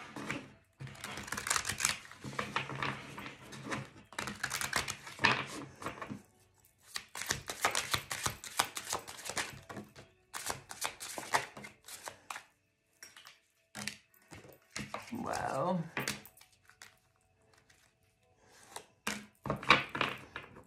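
Oracle cards being shuffled and handled: runs of quick flicking, riffling and slapping card sounds with short pauses between them, ending as a card is laid down on the table.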